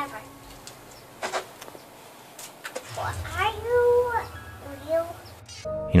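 A dog whining: one drawn-out whine about three seconds in that rises, holds and falls, then a shorter rising whine near the end.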